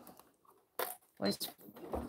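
A domestic sewing machine stops stitching at the start, leaving a pause broken by a single sharp click a little under a second in.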